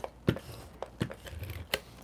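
Cardstock being handled as black paper flaps are pressed and folded over a cardboard cover and stuck down, low rustling with three light sharp clicks.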